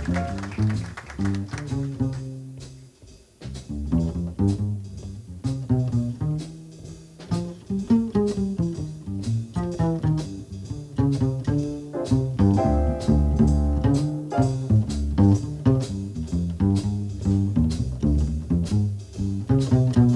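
Jazz double bass playing a plucked solo passage, with drum and cymbal strokes behind it.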